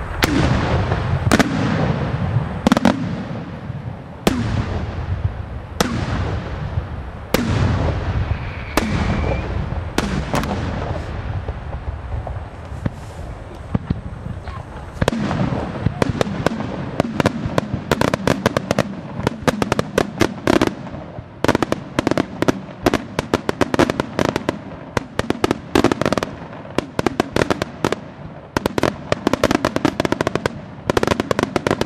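Aerial fireworks display. For the first half, single shell bursts bang about every second and a half, each with a long echoing tail. From about halfway, a dense, rapid crackling of many small reports takes over.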